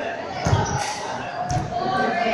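Table tennis ball striking the table and bats: two sharp clicks about a second apart, the first the loudest, echoing in a large hall.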